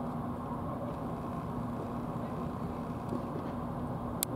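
A steady low machine hum carrying a faint constant tone.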